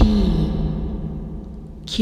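A single voice, altered by a voice-changer effect with echo, saying the letter name "P" once. Its pitch drops and then holds as it fades away. Just before the end, the next letter, "Q", begins.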